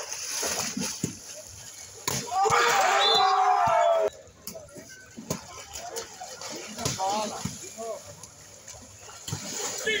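Pool water splashing and sloshing as players move and jump in a shallow pool during a biribol rally, with scattered sharp slaps. About two seconds in there is a loud stretch of about two seconds with a man shouting over the splashing.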